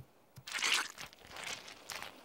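Cartoon sound effect of a plastic sun-cream bottle being squeezed: a short noisy squirt about half a second in, followed by softer squelching as the cream is spread.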